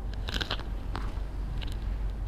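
Light crinkling and clicking of paper being handled, a cluster of them about half a second in and one more near one second, over a low steady hum.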